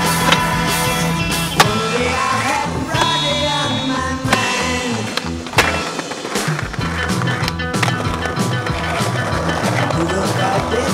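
A skateboard rolling on concrete, with several sharp clacks of the board popping and landing, over a music soundtrack.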